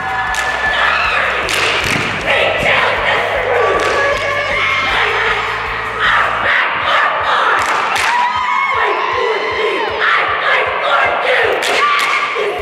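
A high-school cheer squad shouting a cheer in unison, many girls' voices chanting together, with a background music bed under the first half that stops about six and a half seconds in.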